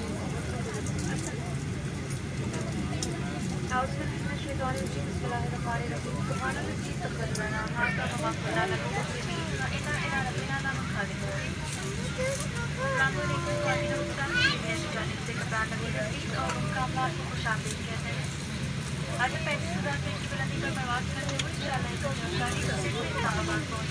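Steady low hum inside a parked Boeing 737-800 cabin, the aircraft's air supply running, with indistinct chatter of passengers settling in.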